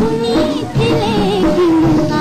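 An old Hindi film song playing, with a singing voice with vibrato over instrumental accompaniment.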